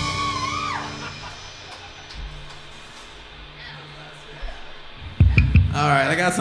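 Live band ending a song: the last chord, with guitar, rings out and fades over about a second, leaving a low steady hum. A few loud thumps come about five seconds in, just before a man starts talking.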